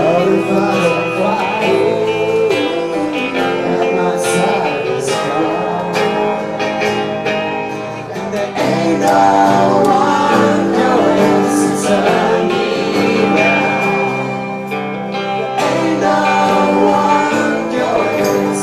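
Live band music: strummed acoustic guitars with a man singing the melody. The loudness dips briefly about halfway through.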